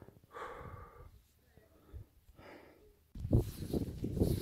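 A hiker's heavy breathing on a steep climb: faint breaths with the effort of walking uphill. About three seconds in, a sudden loud, low rushing noise starts and a tired, exhaled 'uff' is heard.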